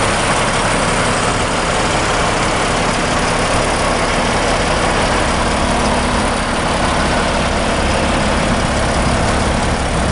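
A Caterpillar C15 inline-six diesel in a Peterbilt 386 day cab idling steadily, a heavy, even diesel rumble with a broad hiss over it.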